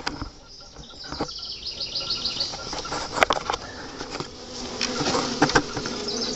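Honey bees buzzing steadily inside a cell starter box packed with shaken-in nurse bees, with a few brief clicks.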